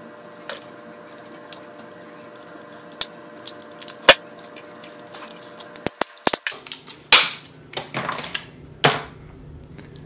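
Stiff plastic packaging being torn open and peeled off a small gold bar by hand, crinkling and crackling in sharp irregular snaps. The crackles are sparse at first and come thick and louder in the second half as the wrapper is pulled away.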